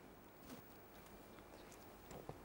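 Near silence: room tone, with one faint click about half a second in.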